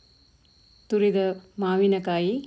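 A steady, faint, high-pitched trill in the background, with a woman's voice starting to speak about a second in.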